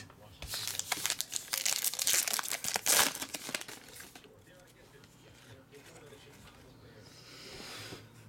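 A trading-card pack wrapper crinkling and tearing as it is ripped open by hand, a dense crackle for about the first four seconds, followed by quieter rustling of the cards being handled.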